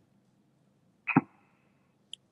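Near silence, broken about a second in by one brief mouth sound from the lecturer at his table microphone.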